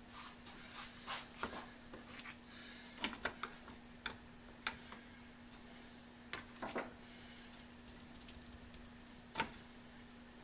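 Irregular small clicks and taps of hands handling a painted cast-metal electric motor and its metal junction box, turning the motor within its mounting frame. The sharpest knocks come about three, four, six and a half and nine seconds in.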